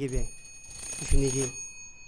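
Electronic alarm sounding a steady, shrill tone of several high pitches for about two seconds, stopping just before the end, with a man's voice speaking briefly under it.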